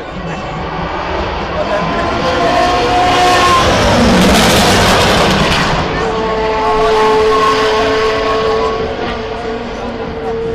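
Race car engine, likely a sports-prototype, approaching and passing at speed, loudest about four to five seconds in, then a steady engine note held as it runs on. The sound comes through a small camera microphone and is harsh.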